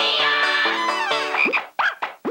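Banjo hoedown jingle that breaks off about one and a half seconds in. Two short, sharply rising animal-like calls follow, the sort of croak effect a barnyard-themed jingle would use.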